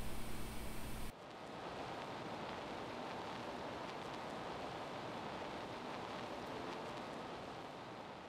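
Faint open-microphone background noise with no speech: a low hum under hiss, which changes abruptly about a second in to a steady, even hiss.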